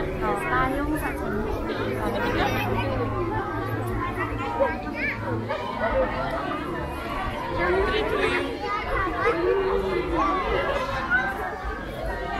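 Crowd chatter: many voices talking at once and overlapping, with no single clear speaker, over a steady low hum.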